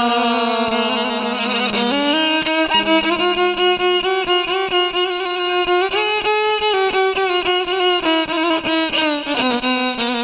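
Instrumental break of a folk song: a violin carries the melody in held notes that slide from pitch to pitch, over a steady rhythmic accompaniment.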